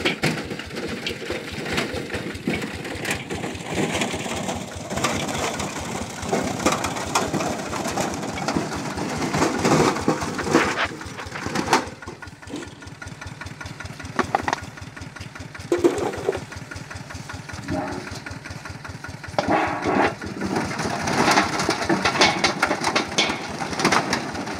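Small engine driving a grinder that crunches up cassava, running steadily with continuous grinding; the grinding drops back about twelve seconds in and picks up again near the end.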